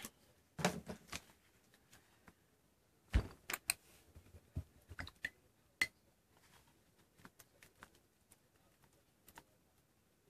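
Scattered light clicks and taps of a paintbrush against a clear plastic bowl as thick acrylic paint is thinned with water and stirred, with a few louder knocks of supplies being handled, the loudest about three seconds in.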